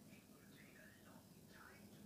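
Near silence, with a faint whispering voice.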